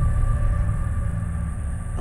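Deep, steady low rumble that swells up with a heavy hit at the start: trailer sound design under a transition.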